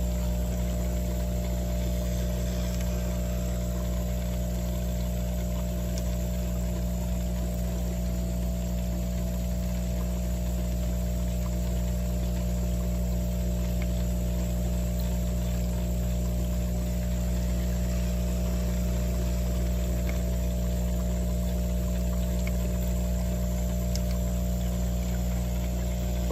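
Steady low hum with several evenly spaced overtones, unchanging throughout, under a faint even hiss.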